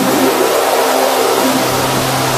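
Techno music in a breakdown: the kick drum and deep bass drop out, leaving a dense, noisy synth texture over a held low tone, with an engine-like quality.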